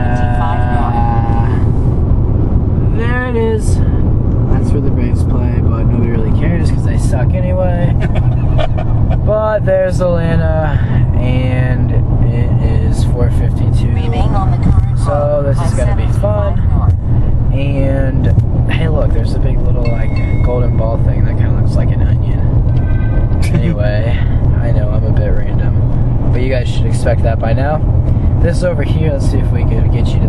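Singing with music over the steady low rumble of road noise inside a moving car.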